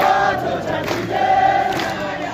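A large crowd of marchers singing together, many voices holding long notes in unison.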